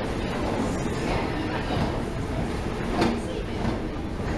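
Steady low rumble of a London Underground station with indistinct voices, and a single sharp knock about three seconds in.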